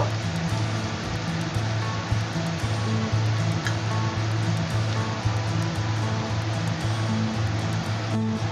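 Background music with a steady, repeating low bass line over an even hiss of ground spices, tomato and garlic frying in mustard oil in a nonstick pan.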